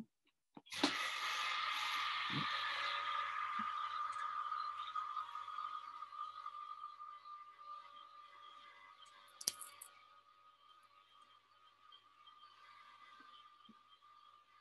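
Vacuum pump switched on about a second in, running with a steady whine over a hiss as it pumps the air out of a vacuum chamber, and growing quieter over the next several seconds. A single sharp click about nine and a half seconds in.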